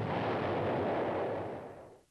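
Rumble of bomb explosions, a dense noisy blast sound that fades away over the last second.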